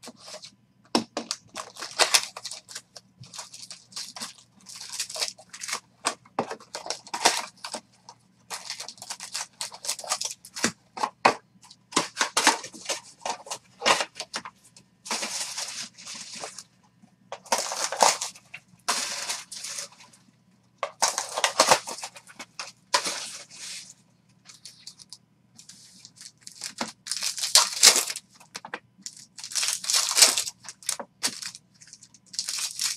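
Trading-card pack wrappers being torn open and crinkled by hand, in a long irregular run of crackly rips and rustles, some brief and some lasting about a second.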